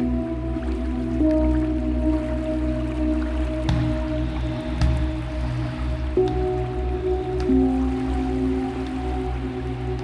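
Dark ambient meditation music: a deep, steady low drone under sustained held chords that shift a few times, with a few brief sharp clicks scattered through.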